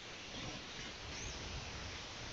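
Faint, steady hiss with a low rumble: the background noise of a headset microphone, with no clear sound event.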